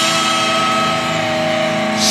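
Visual kei rock band playing live, holding one steady sustained chord without vocals.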